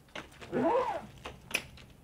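A short wordless vocal sound from a person, rising then falling in pitch, with a few light clicks around it.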